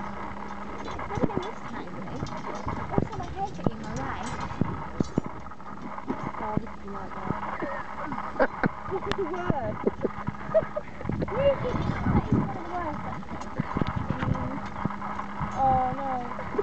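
Tent poles knocking and clacking irregularly as they are handled and bent into place, with voices in the background.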